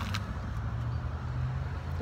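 Steady low hum of a motor vehicle engine running, with a brief click right at the start.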